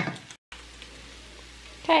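A short knock at the very start, then a soft, steady sizzle of chicken pieces, vegetables and flour frying in pans as the flour cooks off.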